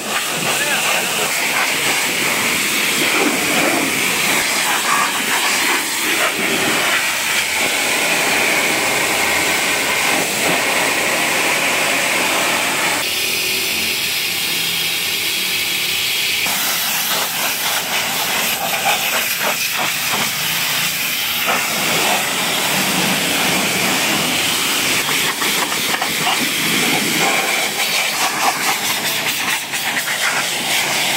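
High-pressure washer jet hissing steadily as it sprays water onto a car's side panels, wheel arch and rear window, the tone of the hiss shifting abruptly a few times.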